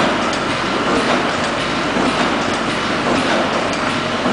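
Automatic vertical milk-powder sachet packing machine running: a loud, steady mechanical clatter with repeated clicks as it turns out filled sachets.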